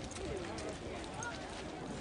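Footsteps of a group of people walking on a dirt and gravel path, with indistinct chatter of several voices around them.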